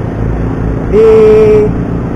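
Yamaha Byson motorcycle riding: a steady low engine and wind rumble, picked up heavily by an action camera microphone that is too sensitive, so all the road noise comes in. About a second in, a man's voice holds a drawn-out "di..." for under a second, the loudest sound.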